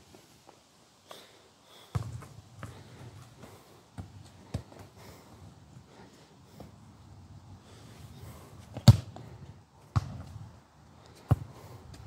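A soccer ball being kicked and bouncing: a handful of sharp, widely spaced thuds, the loudest about nine seconds in.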